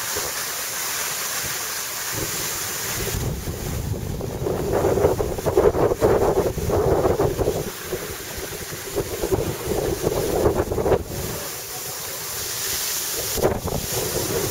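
Wind rushing over the microphone of a camera carried by a downhill skier, with the skis scraping and chattering over the packed snow in rough, uneven bursts through the middle of the run.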